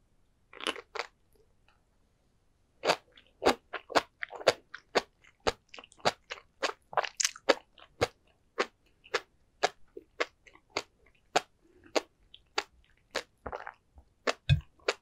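Close-miked chewing of a mouthful of sea grapes (Caulerpa racemosa) with flying fish roe, the beads popping in crisp, sharp clicks. A first bite comes just after the start, then after a short pause the pops run on steadily at about two a second.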